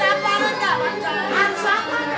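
Several people talking at once: the chatter of guests at a party.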